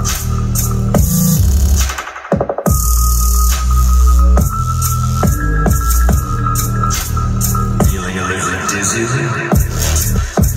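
Electronic bass music with heavy sub-bass, played through a Skar SDR-8 8-inch dual 2-ohm subwoofer in a 1 cubic foot enclosure tuned to 34 Hz. The bass breaks off briefly about two seconds in, comes back hard, and the deepest notes drop away for a moment near the end.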